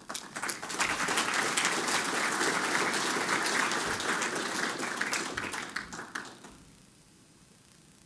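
Audience applauding: the clapping starts at once, holds for a few seconds and fades out after about six seconds.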